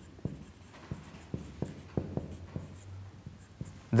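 Marker pen writing on a whiteboard: a run of light, irregular ticks and scratches as the letters are stroked out.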